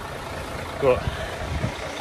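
Low, steady rumble of a grab lorry's diesel engine idling close by, with one short spoken word about a second in.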